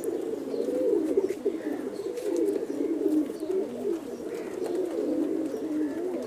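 Domestic pigeons cooing, low rolling coos following one another without a break.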